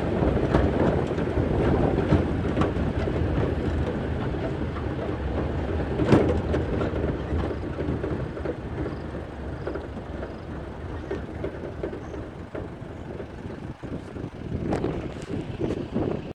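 A pickup truck driving over a rough dirt farm track, heard from its open load bed: a steady rumble of the vehicle and its tyres on the dirt, with scattered knocks and rattles as it bumps. There is one sharp knock about six seconds in. The rumble grows quieter in the second half and picks up again near the end.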